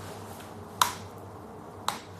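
Two sharp clicks about a second apart from a cigarette lighter being flicked.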